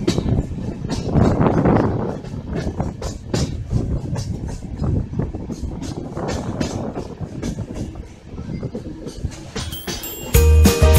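Passenger express train running on the track: a steady rumble with irregular clattering knocks from the wheels on the rails.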